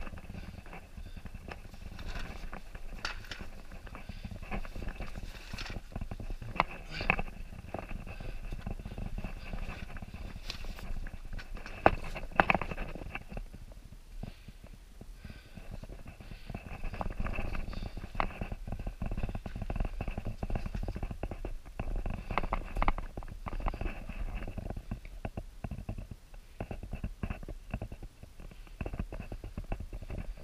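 A person crawling over rough lava rock: scuffing and scraping with scattered knocks and clatters of small stones, and breathing. The movement stops briefly about halfway through, then resumes.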